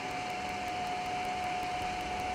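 Steady flight-deck noise of a Canadair CRJ-200 on short final: an even rush of airflow and engine noise with a steady whine running through it.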